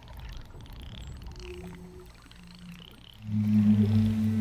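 Humpback whale song: faint moans and squeals gliding up and down in pitch. About three seconds in, a wooden Native American-style flute comes in much louder with a low, steady held note.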